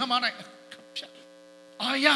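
Steady electrical mains hum from a microphone and sound system, heard plainly in a gap of about a second and a half between a man's amplified speech at the start and again near the end.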